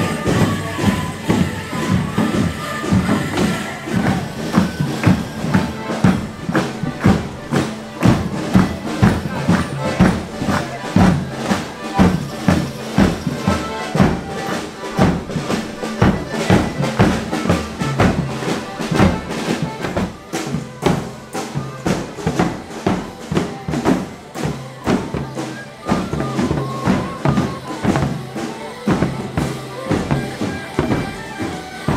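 Live folk band of accordions and a drum playing a morris dance tune, with a steady, even beat throughout.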